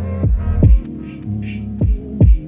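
Instrumental lo-fi hip hop beat: deep kick drums that drop in pitch land about three times over held notes, with a soft brushy percussion hit in the middle.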